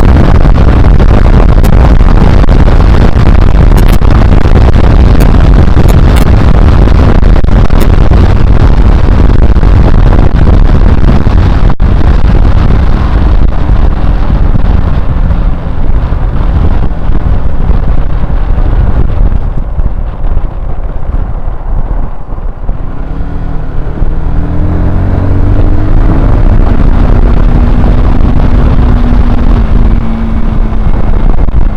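Honda CBR125R's single-cylinder engine under way, heavily covered by wind noise on the camera microphone at road speed. About two-thirds through the wind eases as the bike slows, then the engine note rises through the revs as it pulls away again and settles into a steady drone.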